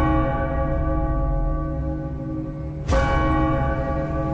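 A large bell tolling: a stroke just before the start rings on and slowly fades, and the bell is struck again about three seconds in, over a low steady drone.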